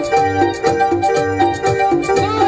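Electronic keyboard playing an instrumental break of Ecuadorian folk dance music: a repeating melody over a steady bass beat.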